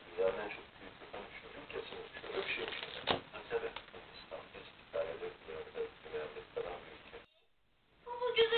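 Men's talk from a sports programme, heard from a television's speaker, with one sharp click about three seconds in. The sound cuts out suddenly near the end as the channel is changed.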